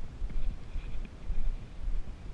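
Footsteps and a trekking pole striking a dirt forest trail in a walking rhythm, over a low rumble of movement and wind on the body-worn camera's microphone.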